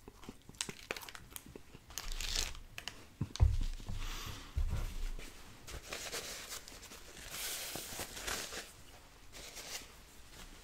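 Close-miked paper napkin crinkling and rustling in several bursts as hands are wiped on it, after small chewing clicks in the first second or two. A dull thump about three and a half seconds in is the loudest sound, with a second softer one about a second later.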